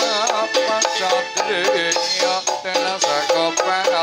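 Live Dolalak dance music from a small ensemble: a melody that bends in pitch over drums, with a steady high clicking beat.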